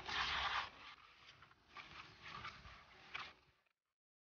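A hand stirring and rubbing powdered fishing bait against a plastic bowl, a rough rustling scrape in uneven strokes. It is loudest in the first second and cuts off abruptly shortly before the end.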